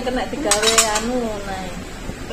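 A ceramic bowl clinking against a stainless steel tray: a quick cluster of sharp clinks about half a second in, with a woman's voice underneath.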